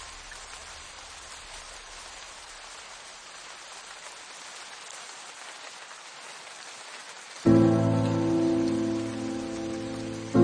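Steady rain hiss with no music for about seven seconds, then a loud piano chord struck suddenly near the end, ringing and slowly fading.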